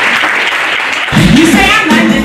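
Audience applauding for about the first second. Recorded music then cuts in suddenly, with a heavy bass line.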